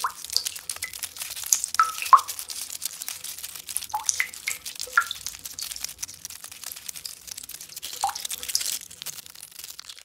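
Water dripping: a scatter of clear drops plopping into water, each with a quick bend in pitch, over a constant fine crackle of small drips.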